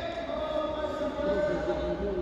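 Indistinct voices calling out in a large, echoing hall.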